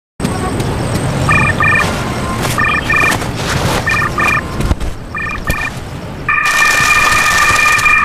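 A phone ringing with a double electronic beep about every second and a half, four times, then one long unbroken tone from about six seconds in, over a low background noise.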